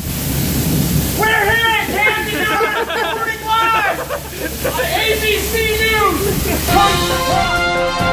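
Heavy rain pouring down in a steady hiss, with a man's voice calling out over it in drawn-out sounds. A theme tune comes in near the end.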